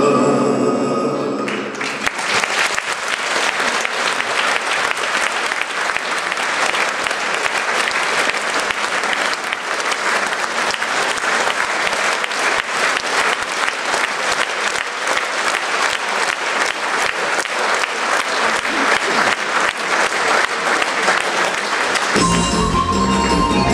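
A song with singing and instrumental backing ends on a held chord about a second and a half in. A large audience then breaks into steady applause.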